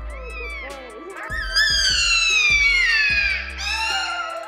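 Black-backed jackal pup whining: high, thin cries that slide down in pitch, the loudest a long falling whine of about two seconds starting about a second and a half in, with another beginning near the end. Background music with a repeating bass note runs underneath.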